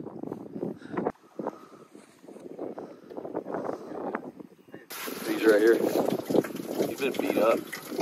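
Indistinct voices talking, cut off abruptly about a second in. About five seconds in there is a cut to louder, closer voices over a steady hiss.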